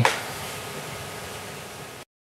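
Steady background hiss of an indoor room, like ventilation, slowly fading, then cutting off suddenly at the end.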